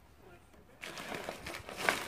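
Padded paper mailer envelope being picked up and handled, rustling and crinkling, starting about a second in.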